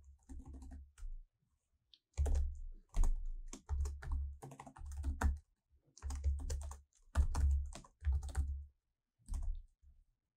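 Typing on a computer keyboard: irregular runs of keystrokes broken by short pauses, with a longer pause about a second in.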